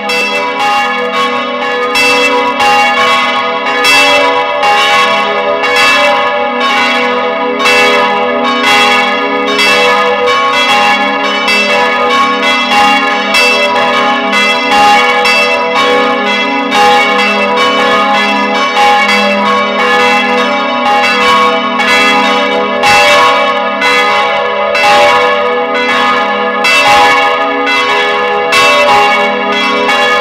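Several church bells swinging in a steel bell frame, ringing together as a continuous peal, their strokes overlapping and each one ringing on into the next.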